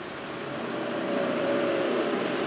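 Steady rushing outdoor background noise with a faint engine hum that grows gradually louder, like a motor vehicle approaching.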